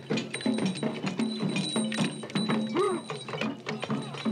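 Fast, dense drumming and clattering percussion for a Dogon masked dance, with a short rising-and-falling call near the end.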